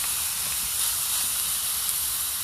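Two porterhouse steaks sizzling in a hot cast iron skillet over campfire coals: a steady, even hiss of meat searing.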